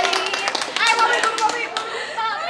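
Girls' high voices calling out, mixed with a few sharp hand claps.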